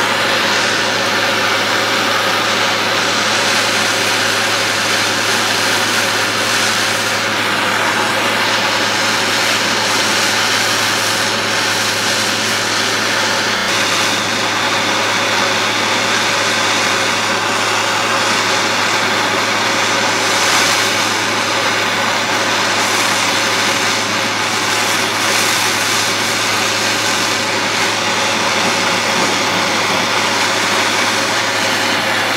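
Propane blowtorch flame burning steadily with an even roaring hiss as it heats the neck of a glass bottle.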